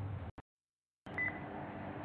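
A faint background hum cuts out to dead silence for most of a second, then a short high beep sounds and a faint steady hum returns.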